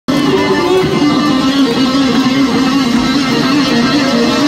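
Live rock band playing with an electric guitar in the lead, holding sustained notes, with no vocals yet. It is recorded loud from the crowd.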